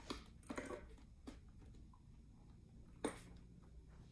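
Faint handling noises from a Scorpion Exo 510 Air helmet's visor and its pivot mechanism being worked by hand: a few soft clicks and scrapes in the first second or so, then one sharper click about three seconds in.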